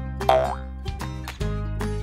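Light children's background music with steady notes and bass, and a short cartoon sound effect with a sliding pitch about a quarter of a second in as the picture changes.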